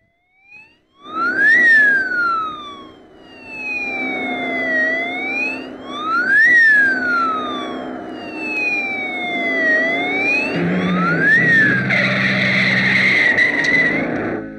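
A wailing vehicle siren over the sound of a moving car. The siren climbs quickly and sinks slowly, three times about five seconds apart.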